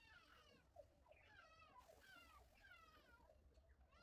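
Faint, repeated high wavering calls from an animal, about six in a row, each lasting under a second.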